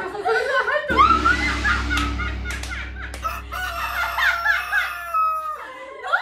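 Two women laughing hard in high-pitched, squealing bursts, with a low steady hum underneath from about a second in.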